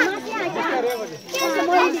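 Several women's voices talking over one another in lively group chatter, with a brief lull a little past the middle.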